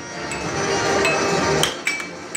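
Air hockey plastic mallets and puck clacking against each other and the table rails: a few sharp, ringing knocks, the loudest near the end, over a steady background din.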